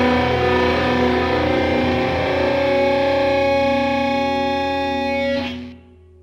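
Background music with distorted electric guitar holding long notes, cutting off sharply about five and a half seconds in and leaving a faint ringing tail.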